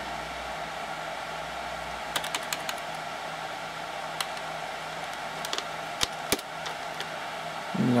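Steady whir and hum of a server's cooling fans, with scattered keystrokes on an IBM computer keyboard: a quick run of about five key presses about two seconds in, then single presses spread through the rest.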